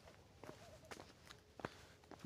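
Faint footsteps on a stone-paved path, about two steps a second.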